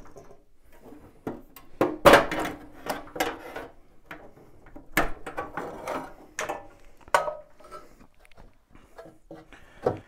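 Irregular clicks, knocks and metallic rattling as the combustion fan and its sheet-metal hood are unplugged and pulled out of a Baxi Eco Four 24F gas boiler. The loudest clatter comes about two seconds in, with a sharp knock about five seconds in.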